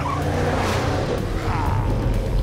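Cartoon sound effect of the Batmobile's engine running as its tyres skid and squeal, over a music score.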